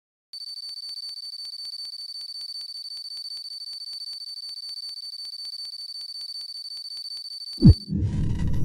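Electronic intro sound effect: a steady high-pitched tone with rapid ticking, about four ticks a second, like a countdown timer. Just before the end it gives way to a short, loud boom that falls steeply in pitch.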